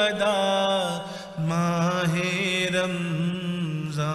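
A man's voice chanting in long, ornamented held phrases in Islamic devotional style. One phrase fades about a second in, and a new, lower phrase begins about half a second later.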